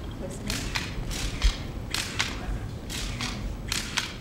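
Still-camera shutters clicking irregularly, about a dozen sharp clicks over a few seconds, with a low murmur of voices.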